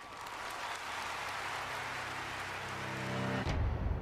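Audience applauding, cut off abruptly about three and a half seconds in. A low pitched tone builds underneath near the end, and a deep low rumble takes over as the applause stops.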